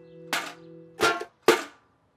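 An upturned metal bucket hopping on a wooden shelf: three hollow knocks, a cartoon sound effect, over a held music chord that stops about a second in.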